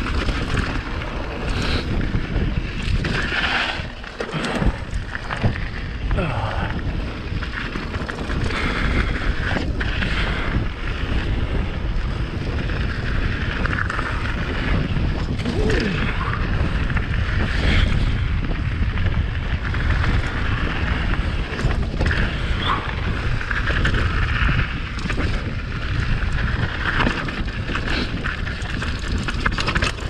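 Mountain bike riding down a dirt and rocky trail: continuous wind rumble on the microphone over the tyres rolling and the bike rattling, with scattered sharp clicks and knocks from the rough ground.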